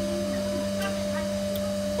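A steady machine hum: a constant low drone with a thinner, higher tone above it, unchanging throughout. Faint distant voices are heard briefly at the start.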